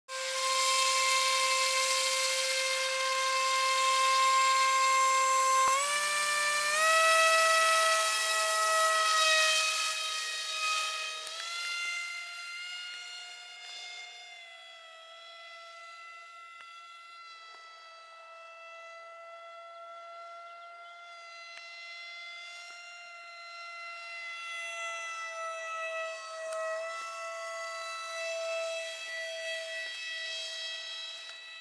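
Brushless electric motor (2200kv) spinning a three-blade 6x4 propeller on a foam RC F-18 jet, a steady high-pitched whine that steps up in pitch about six seconds in. The whine then fades as the plane flies off and grows louder again near the end. The owner found this motor and prop setup underpowered.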